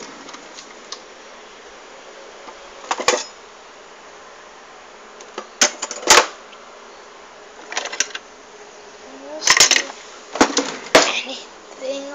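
Scattered sharp clicks and clatters of kitchen handling, about seven over the stretch and thickest near the end, over a steady faint hiss.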